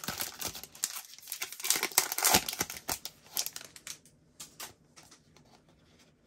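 Plastic wrapper of a Panini Prizm football card pack being torn open and crinkled by hand: a dense run of crackling that thins out after about three seconds into a few faint clicks.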